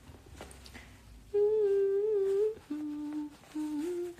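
A man humming a short tune with his mouth closed: after a quiet first second, one long held note, then a lower note, then a note sliding up near the end.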